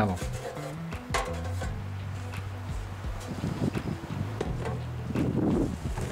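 Sheet-metal access panel of an air-conditioner condenser unit being pulled off, with a few sharp metallic clanks, over background music with sustained low notes.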